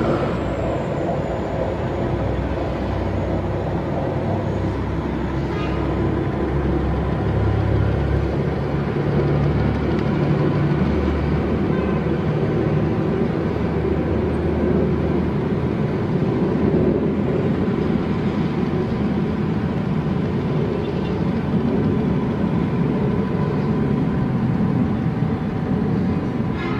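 Jet warplanes flying high overhead: a steady, unbroken low rumble.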